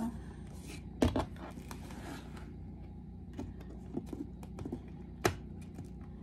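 Hands working cardboard and a glue gun on a tabletop: a sharp tap about a second in and another near the end, with a few softer clicks between, over a low steady hum.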